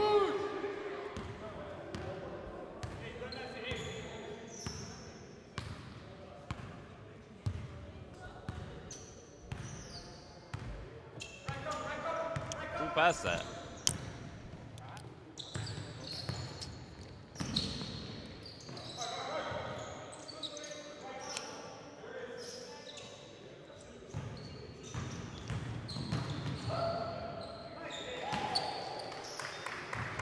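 Basketball game sounds in a large gym: a basketball bouncing on the hardwood court in irregular dribbles, with short high sneaker squeaks and players' voices calling out, all with hall echo.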